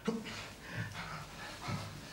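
A man groaning and breathing heavily, a few short, irregular sounds.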